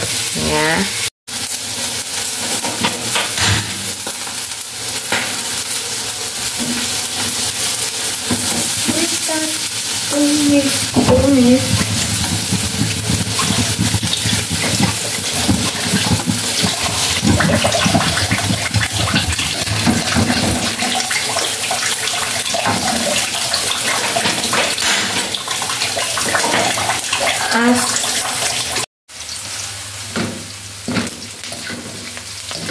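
Water running steadily from a tap into a sink, with faint voices in the background. It cuts in about a second in and stops abruptly shortly before the end.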